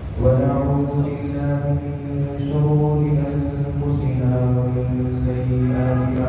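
A man's voice chanting an Arabic recitation in long, steady held notes that step between a few pitches, picked up by a headset microphone.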